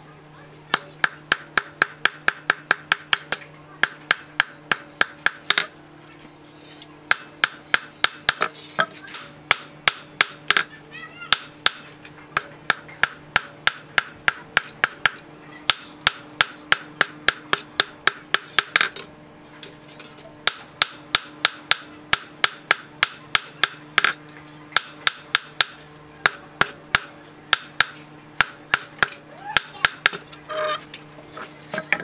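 Hand hammer beating a steel knife blank on a steel-post anvil, drawing out and shaping the blade. Runs of quick, even blows, about three a second, each a sharp metallic strike, broken by a few short pauses. A steady low hum lies underneath.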